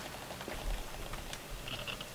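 Quiet room noise with a few faint, scattered clicks and taps from a seated audience shifting while waiting.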